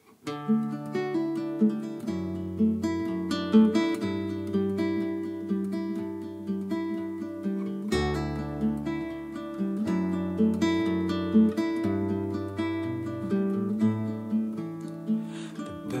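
Solo nylon-string guitar, fingerpicked: a steady run of plucked arpeggio notes over held bass notes, with a deep low bass note struck about halfway through.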